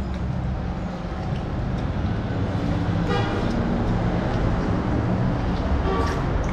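Road traffic passing, a steady low rumble that swells slightly about two seconds in, with a vehicle horn tooting briefly about three seconds in and again briefly near the end.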